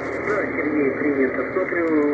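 A single-sideband (LSB) voice from an amateur station on the 40 m band, received by an RTL-SDR Blog V3 in SDR#. The voice sits in steady band hiss, and the sound is cut off sharply above about 2.4 kHz by the receiver's filter.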